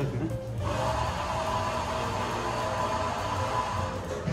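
A steady rushing noise, like a blower or machine, comes in about half a second in and holds evenly, with background music and a few held tones running underneath.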